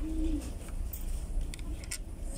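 A brief low hum from a person's voice, then quiet room noise with a few faint clicks.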